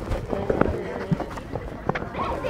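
Young children running on a synthetic pitch: quick, scattered footfalls, with faint voices in the background.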